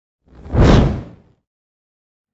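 A single whoosh sound effect with a deep low rumble under it, swelling up about a third of a second in and dying away by about a second and a half.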